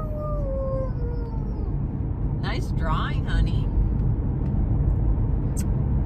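A young girl's long, drawn-out 'oooo', falling slowly in pitch and ending about a second in, followed by a couple of brief sounds from her voice. Under it, the steady low rumble of the car's road noise inside the cabin.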